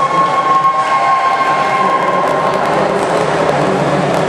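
Steady echoing crowd and splashing noise in an indoor pool hall, with a single steady high tone held for about three seconds that stops abruptly partway through.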